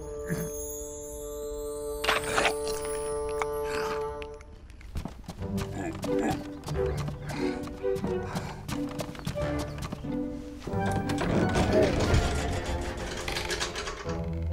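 Cartoon background music: a held note, then short plucked-sounding notes, with comic sound effects such as clicks, knocks and falling whistle-like glides, and a character's wordless vocal sounds.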